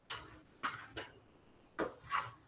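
Four short, soft noises from a man moving through a solo drill, each a few tenths of a second long, the last near the end.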